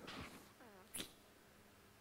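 Near silence: a pause between spoken phrases. A faint, wavering pitched sound comes about half a second in, and a short click about a second in.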